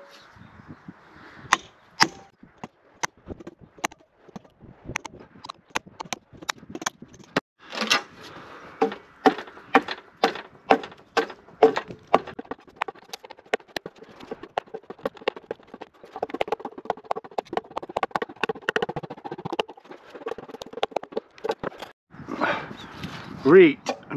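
Repeated sharp knocks of a small axe cutting into a length of ash. At first a hammer drives the axe with a few spaced blows, then the axe is swung and strikes come several a second.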